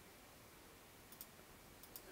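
Near silence with two faint clicks at a computer, one a little past a second in and one near the end.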